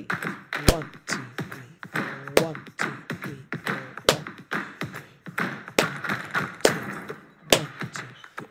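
Hand claps picking out a rhythm pattern, one sharp clap every one to two seconds at uneven spacing, with a woman counting the beats aloud between them.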